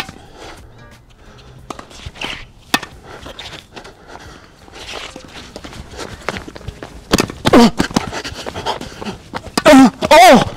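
Tennis rally on a hard court: sharp racket strikes on the ball and quick footsteps. A player gives loud vocal yells about seven seconds in and again at the very end.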